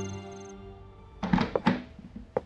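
Background music fades out, then come two loud thuds a little under half a second apart from a heavy wooden panelled door.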